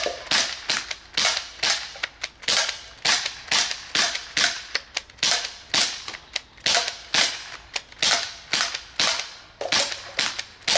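CO2-powered BB guns firing a rapid string of sharp pops, about three shots a second, slightly uneven, each with a short echo after it.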